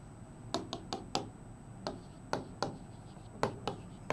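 Marker pen writing on a whiteboard: a string of irregular short taps and scratchy strokes as letters are written, a few with a faint squeak.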